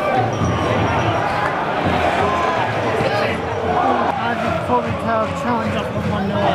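Football crowd in a stadium stand: many voices shouting and singing over one another in a steady din, with a few dull thumps.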